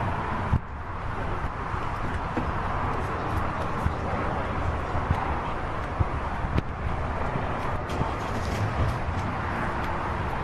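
Steady outdoor background noise on a car forecourt, an even hiss-like haze, with a few faint knocks now and then.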